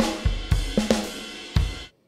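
Addictive Drums 2 sampled drum kit (Black Velvet kit, Standard preset, already mixed with EQ and compression) playing a rock groove of kick, snare, hi-hat and cymbals. The playback stops abruptly near the end.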